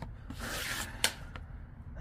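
A man sighs, then a paper scratch-off lottery ticket is handled, with a sharp tap about a second in.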